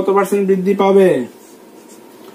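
A man speaks briefly, then a marker pen writes faintly on a whiteboard.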